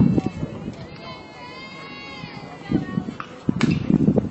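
People's voices calling and shouting across a softball field, loud at first. A quieter lull follows with faint distant calls, then louder shouting picks up again near the end.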